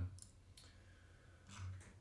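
Faint clicks of a computer mouse in a small room, the loudest about one and a half seconds in.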